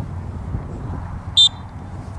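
A single short, high-pitched blast on a referee's whistle, about one and a half seconds in, over a steady low rumble of outdoor background noise.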